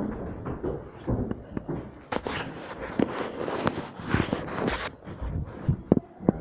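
Footsteps with scattered knocks and rustles, coming at uneven intervals.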